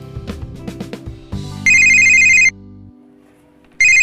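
Background music with plucked strokes fades, then a mobile phone rings with a loud, trilling electronic ringtone for about a second. It rings again briefly near the end and cuts off as the phone is picked up.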